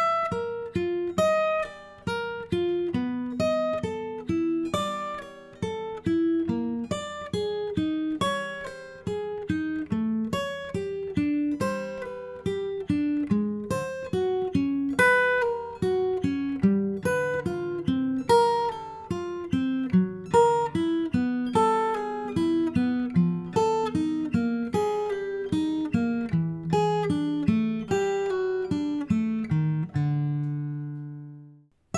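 Acoustic guitar played fingerstyle: a slow, evenly paced chromatic warm-up exercise of single plucked notes in groups of four, working down the neck from the twelfth fret toward the first positions.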